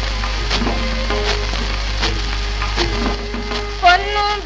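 Instrumental interlude from a 78 rpm shellac record: melodic instruments hold and step between notes, with scattered percussion strokes. It plays over the record's surface crackle, hiss and a low hum.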